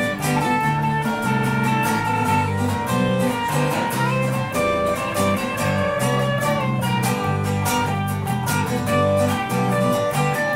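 Live band guitars playing an instrumental passage between verses: steady strumming over a rhythmic run of low notes, with a melody line on top that bends upward in pitch about four seconds in.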